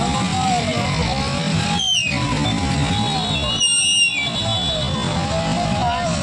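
Instrumental passage of a Mewati song: a steady low beat under a melody line that bends up and down, with two brief high swooping effects about two and four seconds in.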